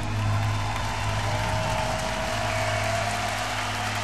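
Concert audience applauding at the end of a live song, with a low steady hum from the stage sound underneath.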